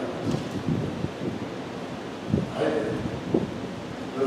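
Low, muffled puffs and rustling close to a microphone, with a brief murmur of a man's voice about two and a half seconds in.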